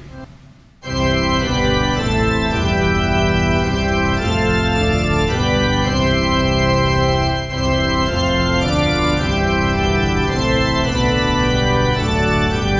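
Organ playing a hymn in full, sustained chords, starting abruptly about a second in, with a short breath between phrases about halfway through.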